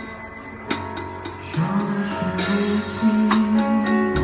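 A drum kit played along to a recorded song: guitar and bass notes under sharp, repeated cymbal and drum strikes, with a longer cymbal wash a little past halfway.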